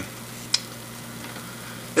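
A pancake sizzling steadily in a nonstick frying pan as it cooks, with one short sharp click about half a second in.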